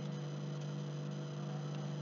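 Steady low electrical hum, even and unchanging, with nothing else over it.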